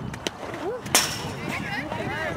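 A softball bat striking a pitched ball: one sharp crack about a second in with a brief high ring after it, amid shouting voices.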